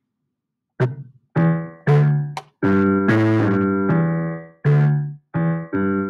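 Software grand piano (BandLab's Grand Piano instrument, C major pentatonic) played one note at a time from the on-screen keyboard: a string of low notes starting about a second in, some cut short, one held for about two seconds.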